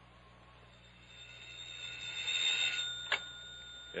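Old-style telephone bell ringing as a radio-drama sound effect. It swells in about a second in, stops just before three seconds, and is followed by a click as the receiver is picked up.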